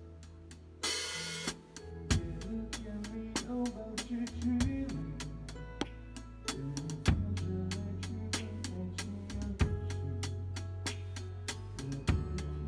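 A live band playing a pop song, led by a drum kit with kick, snare, hi-hat and cymbals over a bass line and keyboards. A loud crash comes about a second in, and a full drum groove follows from about two seconds on.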